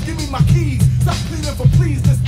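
Hip hop track playing: a male rapper delivering a verse over a beat with a heavy bass line.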